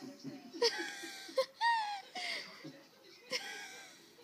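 A person laughing in several short, breathy, high-pitched bursts.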